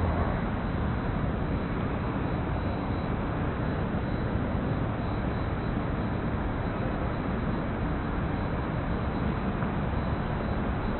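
Steady outdoor city noise, a low rumble of traffic, with no distinct events standing out.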